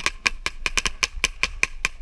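Paintball marker firing a rapid string of sharp shots, about seven a second, held close to the microphone.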